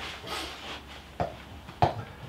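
Two light, sharp clicks, about a second in and near the end, of an iron's clubhead knocking against golf balls as it rakes a practice ball out of a ball tray onto the hitting mat.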